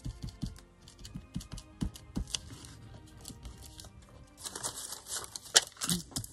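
Soft background music under light taps and rubbing of fingers pressing paper pieces down on a card envelope, then a crinkly rustle with sharp clicks near the end as a plastic sheet of gem stickers is handled.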